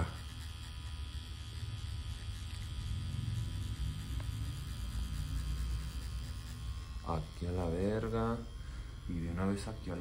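Pen-style rotary tattoo machine running against the skin of a hand, a steady low electric hum.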